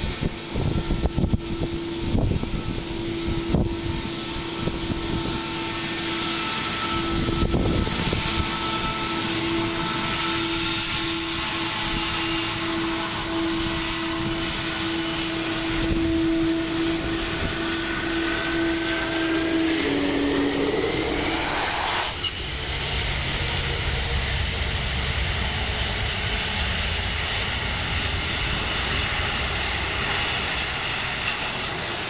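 Boeing 777-200ER's two turbofan engines at taxi power: a steady whine over a rushing roar. About twenty seconds in, one tone rises and cuts off and the main whine drops, and from then on the sound is a deeper rumble as the jet's tail and exhaust turn toward the listener. Wind buffets the microphone with a few low gusts in the first seconds.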